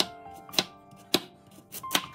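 Kitchen knife slicing a carrot on a wooden cutting board, each cut ending in a sharp knock of the blade on the board, four cuts about half a second apart.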